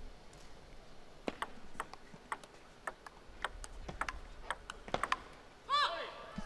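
Table tennis rally: the plastic ball clicking off rackets and the table in a run of about a dozen sharp taps, roughly two a second, coming quicker near the end. A brief high-pitched sound follows just before the end.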